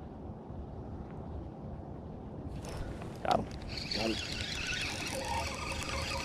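Spinning fishing reel being cranked to retrieve line: a whirring that starts about two and a half seconds in and grows louder toward the end.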